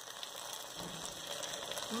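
Chicken in sauce sizzling steadily in a hot pot, with the hotplate under it just switched off.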